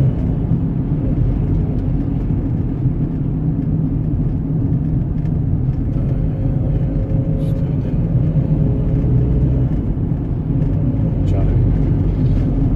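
Steady engine and road rumble heard from inside a van's cab while it is driven along at speed.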